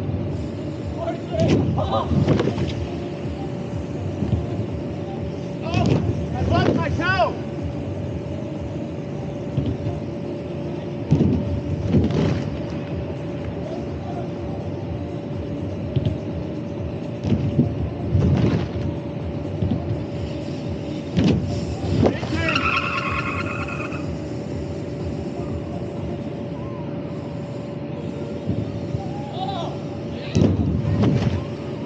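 Steady hum of the blower that keeps a BMX airbag lander inflated, with short loud noisy bursts every few seconds from riders and bikes landing on the airbag, and a brief higher-pitched sound a little past two-thirds of the way through.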